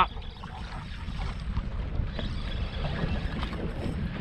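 Wind buffeting the microphone and choppy waves slapping against a bass boat's hull, heard as a steady low rumble with irregular splashy texture.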